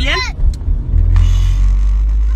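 Low, steady rumble inside a car cabin. A brief hiss comes in about a second in.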